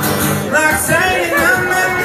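A male singer singing to his own strummed acoustic guitar, a solo live performance at a bar microphone.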